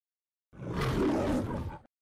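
A single lion roar of just over a second, as in the MGM studio-logo intro, starting about half a second in and ending abruptly.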